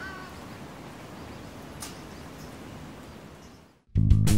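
Outdoor ambience: a steady background hiss with a low rumble, a brief animal call right at the start, and a single sharp click about two seconds in. It fades out just before the end.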